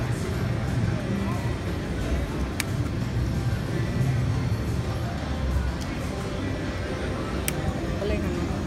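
Electronic music and reel-spin sounds from a video slot machine over a steady background of casino chatter, with two sharp clicks, one a few seconds in and one near the end.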